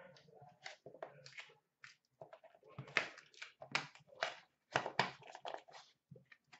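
Small cardboard card box handled and opened by hand: an irregular run of rustles, scrapes and crinkles, busier and louder in the second half.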